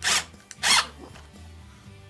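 A wood screw being driven through a plastic Kolbe Korner drawer fitting into the drawer's wood, in two short bursts within the first second. Background music plays throughout.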